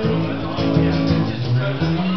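Acoustic guitar played live, its chords changing every fraction of a second.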